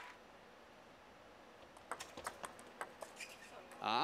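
Table tennis rally: a celluloid-type ball clicking quickly back and forth off the rackets and bouncing on the table. The clicks start about halfway through after a quiet pause and stop just before the end.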